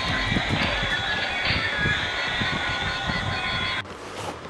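Battery-operated toy guns sounding their electronic sound effects: a steady electronic buzz with thin high tones over a fast pulsing, cutting off suddenly just before the end.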